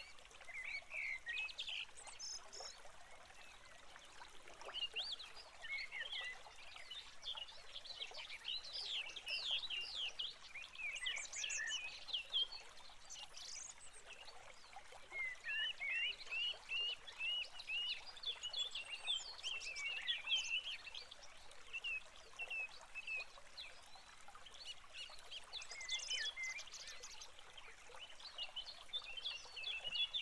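A chorus of birds chirping and calling: many short, quick chirps overlapping one another, with a few higher calls now and then.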